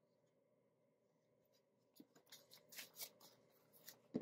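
Near silence, then faint rustling and soft clicks of paper banknotes being handled, starting about halfway in.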